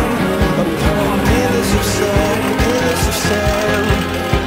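Rock music with a steady drum beat.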